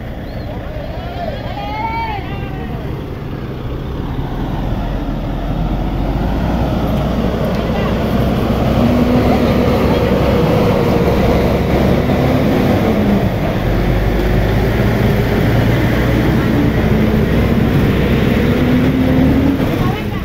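Dump truck engine running and growing louder over the first several seconds as it comes close, then holding steady, with people's voices over it. A voice rising and falling about two seconds in.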